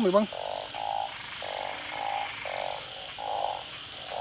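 Chorus of calling narrow-mouthed frogs (Thai 'ung', burrowing frogs that come out to breed after rain): a run of repeated call notes, each about half a second long, about six in four seconds, over a steady high hiss.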